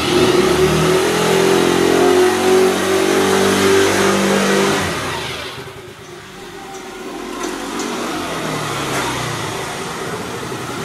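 A Kymco scooter's freshly rebuilt GY6 single-cylinder four-stroke engine running and pulling away under throttle. It is loud for about five seconds, dies away, then comes back and grows louder as the scooter approaches near the end.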